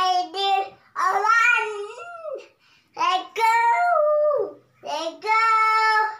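A young girl singing alone in a high voice, without accompaniment, in several short phrases; she holds the last note steadily near the end.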